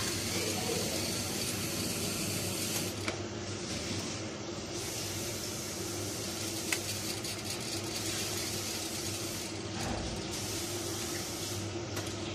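Chaffoteaux Talia gas combi boiler running: a steady rushing hiss with a constant low hum underneath and a few faint clicks.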